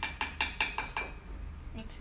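A spoon stirring sugar into milk in a ceramic mug: a fast run of light clinks, about eight a second, that stops after about a second.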